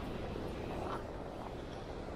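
Steady, low rumbling outdoor background noise with faint voices from a group of people standing close by.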